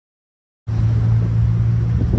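A loud, steady low rumble with a low hum, cutting in suddenly after under a second of dead silence.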